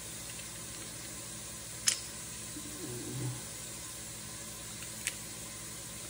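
Two sharp clicks about three seconds apart from a metal garlic press being worked and opened, over a steady hiss.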